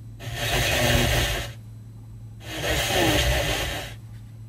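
Nissan X-Trail's factory FM radio switching between preset stations, playing two bursts of hiss-like radio noise about a second long each. A brief muted gap falls between them as it changes station.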